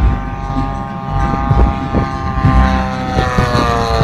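Radio-controlled aerobatic biplane's 100 cc engine and propeller droning in flight, the pitch sliding slowly down as it passes. Low rumbling thumps run underneath.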